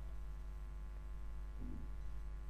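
Steady low electrical hum with its overtones, the background noise of the recording chain, and nothing else of note.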